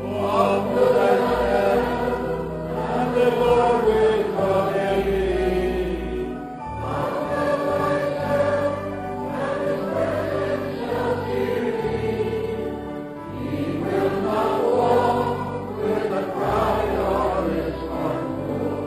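Slow choral worship music: sustained sung chords that swell in long phrases over a low bass line.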